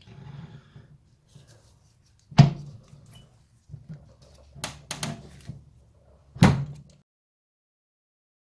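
Classic Mini rear wheel hub being worked down over its greased stub axle by hand, a tight fit: metal handling noise with four sharp knocks, one about two and a half seconds in, two close together near five seconds, and a last one at about six and a half seconds.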